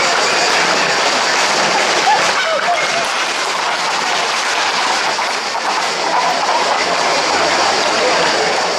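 Hooves of galloping Camargue horses and bulls clattering on an asphalt street, mixed with the continuous chatter of a crowd.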